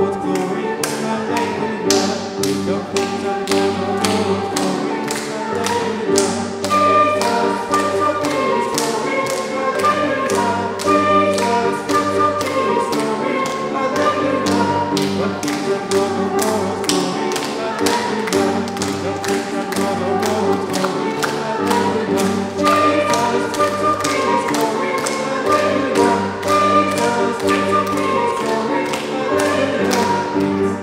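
A congregation clapping along in a steady beat, about two claps a second, over a lively worship song with flute playing.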